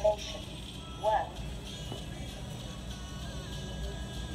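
The Schindler PORT destination terminal's recorded voice finishing its prompt at the very start. A short voice sound follows about a second in, then faint background music over a low steady hum.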